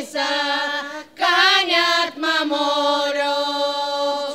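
Bulgarian village women's folk choir singing an authentic folk song together without instruments. The phrase breaks for a breath about a second in, then settles on one long held note.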